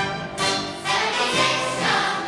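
Large combined school choir singing a held chord with instrumental accompaniment; about a third of a second in, a bright, noisy wash joins the sustained voices.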